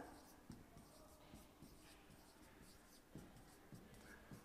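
Faint taps and light scratches of a stylus writing on a glass touchscreen smart board: a few soft ticks spread through otherwise near-silent room tone.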